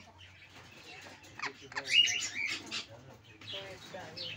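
Sun conures calling: a short cluster of shrill, sharp calls in the middle, loudest about two seconds in.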